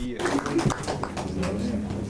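Indistinct voices of people talking quietly in a room, with no clear words.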